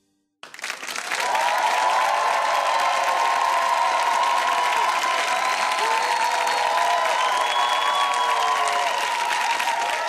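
Studio audience applauding, starting suddenly about half a second in after a brief silence and then holding steady.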